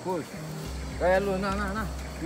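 A person's voice: a short sound at the start, then a drawn-out one about a second in whose pitch wavers up and down, over a steady low rumble.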